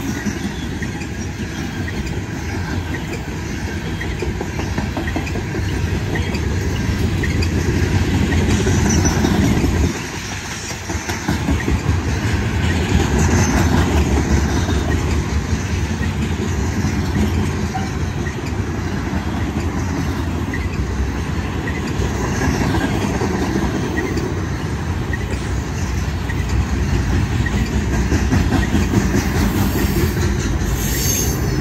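Loaded coal hopper cars rolling past on the rails: a steady rumble of steel wheels with clickety-clack over the rail joints, dipping briefly about ten seconds in.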